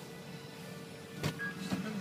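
Low steady hum of a car cabin with a faint held tone over it, then two short knocks a little after a second in.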